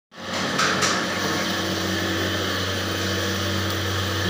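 Steady low machine hum of running kitchen equipment, with two brief rustles in the first second.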